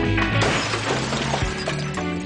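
Guitar rock music cuts off about half a second in and is followed by a noisy crash that fades away.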